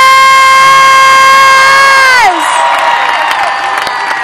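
A woman shouting one long held word into a microphone, her voice sliding down in pitch and breaking off a little over two seconds in; then a crowd cheering.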